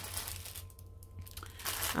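Plastic packaging crinkling as a clear sleeve of small zip bags of diamond-painting drills is picked up and handled, in two spells with a short lull in the middle.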